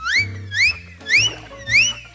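Four quick rising swoop sound effects, about two a second, cartoon hop sounds for the tiny cow bounding away, over children's background music with a low bass line.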